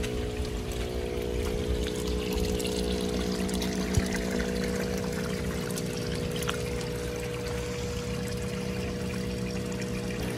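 Water trickling and pouring into a backyard fish pond, with a steady low hum underneath.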